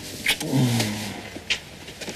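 A couple kissing: a few wet lip smacks, and a short, low murmur that falls in pitch early in the kiss.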